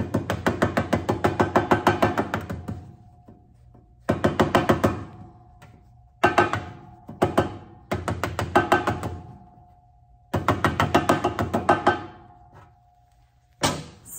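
A rawhide mallet striking the edge of a copper lid held over a metal stake, in quick runs of blows about three or four a second with short pauses between runs, and a faint steady ring through the middle. The blows are hammering kinks and warping out of the lid's edge and corners.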